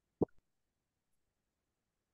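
A single short pop about a fifth of a second in, followed at once by a fainter tick, over otherwise near-silent gated call audio.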